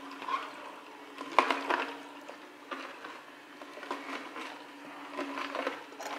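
Vertical slow juicer's motor running with a steady low hum, its auger crushing produce, with scattered short cracks and knocks.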